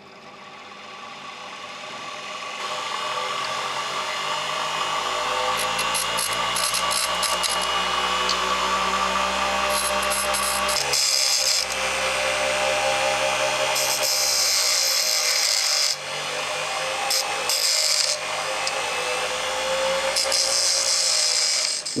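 Small Forte BGM 0725 bench grinder motor coming up to speed and running with a steady whine. The end of a small steel M2 screw is pressed against the abrasive stone wheel in several passes of a second or two each, each contact adding a harsh, high grinding hiss of metal on stone as the excess length is ground off.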